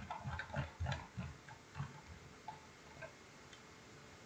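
Faint ticking of a computer mouse scroll wheel as a document is scrolled: a quick run of small clicks over the first second or so, then a few more spaced out.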